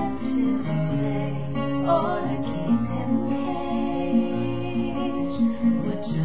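Acoustic guitar playing chords, the notes ringing on and changing every fraction of a second.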